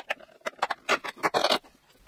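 Fingers prying open a cardboard door of a Catrice advent calendar: a string of short scrapes and taps, loudest about one and a half seconds in.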